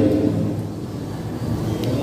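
A pause in a man's speech: the echo of his voice dies away, leaving a low, steady rumble of background noise.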